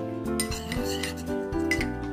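A few sharp clinks of a kitchen dish being handled, over steady background music.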